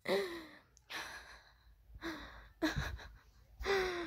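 A child's breathy sighs and gasps, about five short bursts roughly a second apart.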